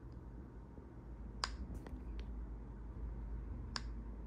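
A few sharp, faint clicks over a low steady hum, the clearest about one and a half seconds in and near the end.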